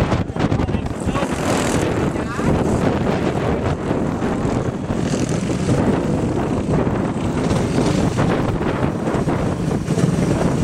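Racing go-kart engines running steadily on the circuit.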